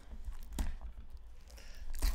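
Faint handling noise of fingers on a small cardboard box: a few light scratches and taps.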